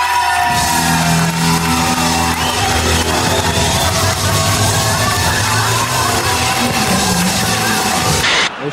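Male singer belting one long, high held note into a microphone over a live rock band, with drums and bass underneath.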